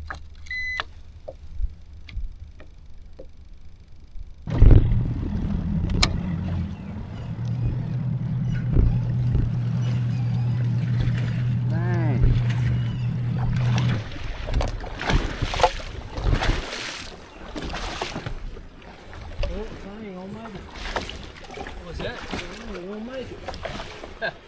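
A bass boat's outboard motor idles with a steady low hum, starting suddenly about four seconds in and stopping about ten seconds later as the boat eases up to a dock. Knocks and clatter follow.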